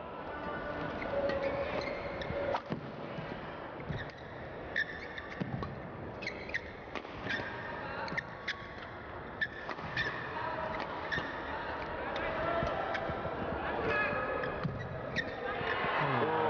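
Badminton rally: repeated sharp cracks of rackets striking the shuttlecock at irregular spacing, with short squeaks of shoes on the court floor over the steady murmur of an indoor crowd. The crowd noise grows louder near the end.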